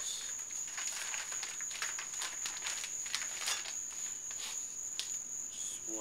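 Plastic wrapping rustling and crinkling, with light ticks, as a bundle of steel golf shafts is handled and sorted, over a faint steady high-pitched whine.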